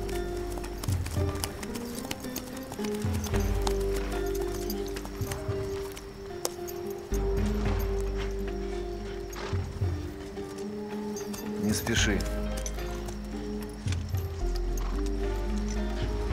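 Film score of held low notes over a deep drone, with horses' hooves shifting and clopping. A horse whinnies once about twelve seconds in.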